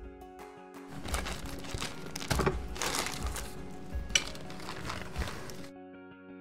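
Background music over a handful of knocks and scraping thumps as a loaf pan holding a freshly baked banana bread is handled with oven mitts. The loudest knock comes about two and a half seconds in. The handling noises stop abruptly near the end, leaving only the music.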